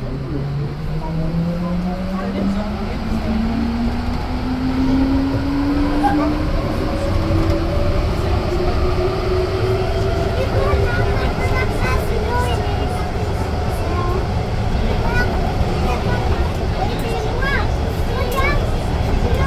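Rubber-tyred Siemens Cityval metro train heard from inside the car as it pulls away and accelerates: the motor whine rises steadily in pitch for about ten seconds, then levels off, over a steady running rumble.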